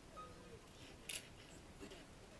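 Near silence, broken once about a second in by a short, sharp hissing click.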